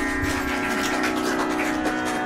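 Steady Carnatic shruti drone holding the tonic with its overtones, with a few faint knocks and handling noises over it.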